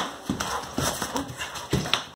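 Gloved punches landing on a pad in quick succession, about six sharp smacks in two seconds, some followed by a short grunt.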